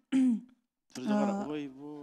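Speech only: a short spoken syllable, a brief cut to dead silence, then a woman's drawn-out voice into a handheld microphone.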